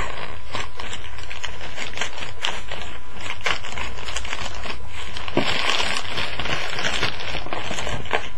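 Packaging rustling and crinkling by hand as a shipping package is opened and its wrapping pulled out, in irregular crackles with a denser burst of crinkling about five and a half seconds in.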